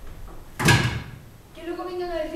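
A single loud bang, like a slam, a little over half a second in, followed from about a second and a half in by a woman's voice.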